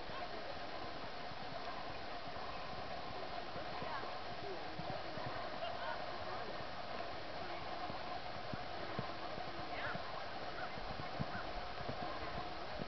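Hoofbeats of a horse cantering on the sand footing of a show arena, with a steady background din.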